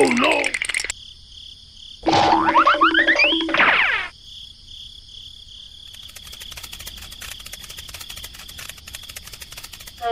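Cartoon sound effects over a steady chirping insect bed: a quick burst just at the start, then a louder run of rising, boing-like pitch glides from about two to four seconds in. From about six seconds a fast, dry run of clicks, like a frog's croak, joins the insect chirping.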